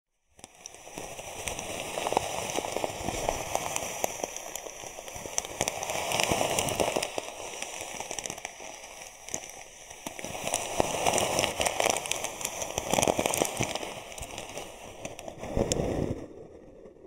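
Styrofoam balls rustling and crackling inside a plastic bag as it is handled. The dense crackle swells and fades in waves every few seconds.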